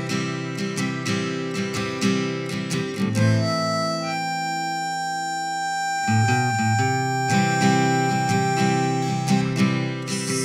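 Instrumental break on strummed acoustic guitar and harmonica. The harmonica plays long held notes, one of them sustained from about four seconds in until near the end. The guitar strumming thins out in the middle and picks up again about six seconds in.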